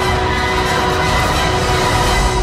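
Film trailer soundtrack played through computer speakers: loud orchestral music holding sustained chords over a heavy low rumble.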